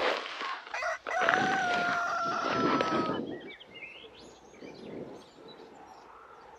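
A rooster crowing: one long call, about two seconds, starting about a second in and slowly falling in pitch. Faint high chirps follow.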